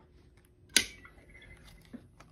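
A single sharp click or knock about three-quarters of a second in, the loudest sound, followed by a few faint clicks of handling as a handheld weather radio is picked up at a desk.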